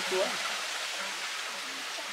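Water running steadily from a garden rockery into a koi pond, an even splashing hiss.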